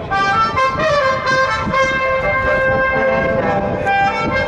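Brass instruments playing a tune in long held notes that step from one pitch to the next, with crowd noise beneath.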